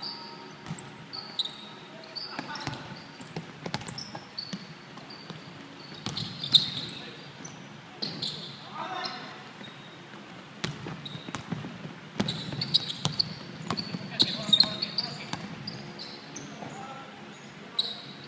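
Basketball game on a wooden indoor court: the ball bouncing on the hardwood floor again and again, sneakers squeaking as players cut, and players calling out now and then.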